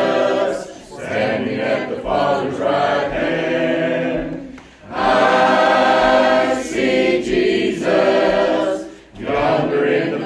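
Church congregation singing a hymn together, in long held phrases with brief breaths between lines about a second, five seconds and nine seconds in.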